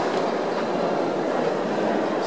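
Steady murmur of many visitors' voices, blurred by echo into a continuous din in a vast stone hall.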